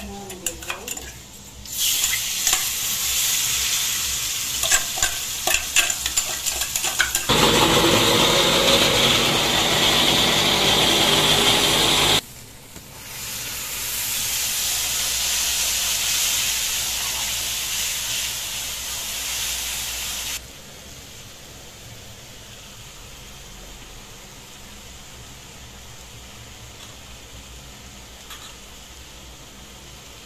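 Masala paste sizzling in hot oil in an iron kadhai, stirred with a metal spoon that scrapes and clicks against the pan. The frying is loudest for about five seconds in the first half, drops off suddenly, comes back more softly, then stops abruptly about two-thirds of the way through, leaving a low steady hiss.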